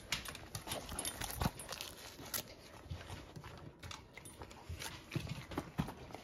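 Great Danes' nails clicking and tapping irregularly on a hardwood floor as the dogs move about.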